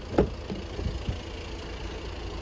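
A car door handle is pulled and the latch releases with a sharp click a moment in, followed by a few softer knocks as the driver's door of a Volkswagen Tiguan swings open. A low rumble runs underneath.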